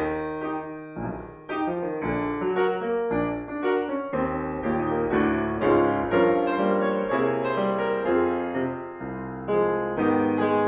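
Grand piano played solo: a jazz standard in full, sustained chords that change every half second or so, with a brief softer moment about a second and a half in.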